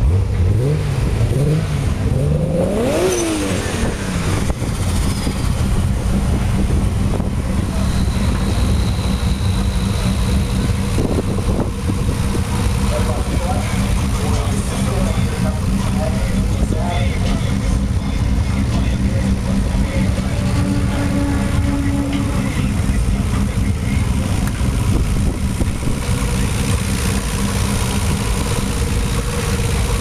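Modified turbocharged car engine idling steadily, revved once about a second in, rising and falling back to idle by about four seconds in.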